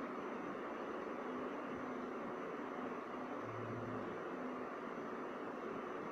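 Steady hiss of room noise, with a faint low hum for about a second midway.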